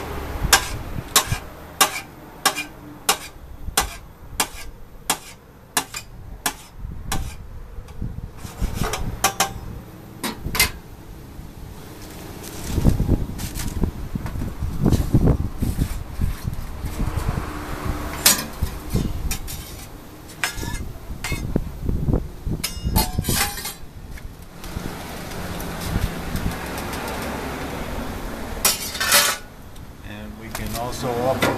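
A knife chopping yellow squash against the bottom of a stainless-steel pan, with sharp knocks at a steady pace of about three every two seconds for the first ten seconds. After that come irregular clanks and scrapes of metal utensils and pans, with a quick cluster of clicks near the end.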